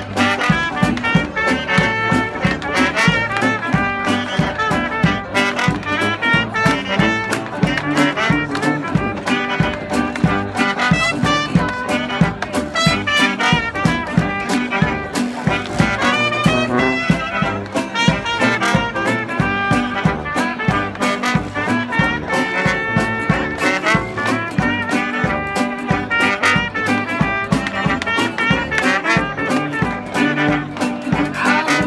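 Traditional New Orleans jazz band playing live: trumpet, clarinet and trombone over sousaphone, banjo and guitar, in a swing rhythm.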